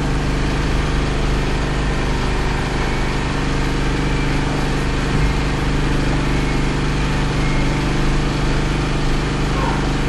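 A generator engine running steadily with an even, unchanging hum.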